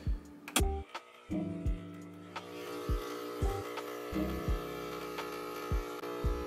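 Breville espresso machine's pump buzzing steadily as it pulls an espresso shot into a steel pitcher, starting about a second in, over background music.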